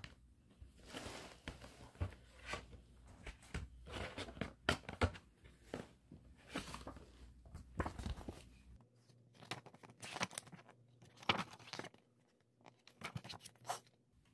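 A CD case and its paper booklet being handled: irregular rustles, crinkles and light clicks as the booklet is opened and its pages are turned.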